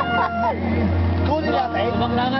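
A group of men talking and laughing together, over a low steady hum that drops away shortly before the end.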